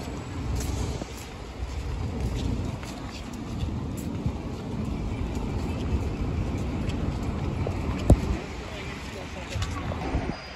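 City street traffic noise, mostly a low steady rumble, heard while walking across a road, with a single sharp knock about eight seconds in.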